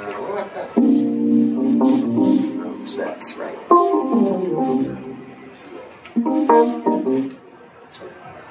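Stage keyboard playing piano-sound chords, three of them struck in turn (about a second in, near four seconds and near six seconds), each held and left to fade.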